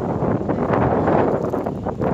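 Wind blowing across a handheld phone's microphone: a steady rushing noise.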